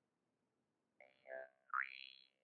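Russian jaw harp (Glazyrin Compass vargan) twanged twice, starting about a second in. The first note's overtone sweeps downward, and the second, louder one glides sharply upward and rings on.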